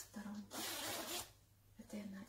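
Zipper of a sweatshirt being unzipped in one quick pull, a rasp lasting under a second that starts about half a second in.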